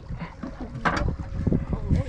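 Small waves slapping against the side of a small boat, with wind rumbling on the microphone and one sharp knock about a second in.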